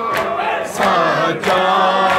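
A male reciter chanting a Shia noha lament into a microphone, with a crowd of men's voices joining in. Regular chest-beating (matam) slaps keep the beat, about one every two-thirds of a second.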